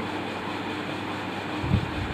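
Steady indoor background noise with a faint low hum, and a single soft low thump near the end.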